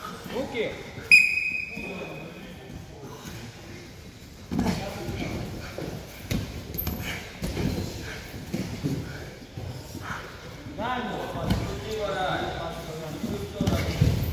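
Wrestlers grappling on a foam mat in a large echoing hall: dull thuds and shuffling of bodies on the mat, with voices in the background. A short, bright ringing ping stands out about a second in.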